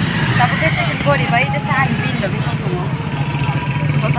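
A vehicle's engine and road noise heard from inside the cabin, a steady low hum, with a woman talking over it.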